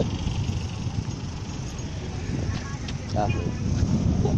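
Street noise with wind rumbling on a handheld phone's microphone and the sound of traffic, with a short voice about three seconds in.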